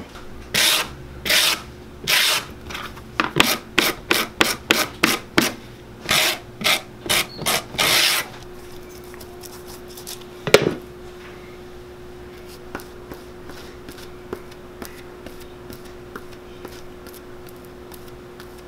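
A new leather sole being scraped by hand, about eighteen short rasping strokes over some eight seconds, quicker in the middle. A single sharp knock follows a couple of seconds later.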